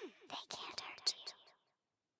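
A whispered voice saying "they can", trailing off about a second and a half in, then dead silence.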